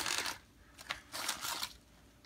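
A plastic mailer bag crinkling as it is handled and emptied: a loud crinkle at the start, then a few shorter, softer crinkles about a second in.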